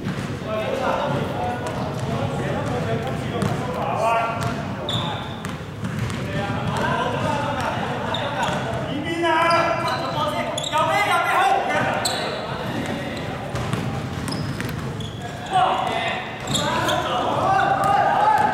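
Basketball game sounds in a large indoor hall: a ball bouncing on the court now and then, under players' and spectators' voices calling out.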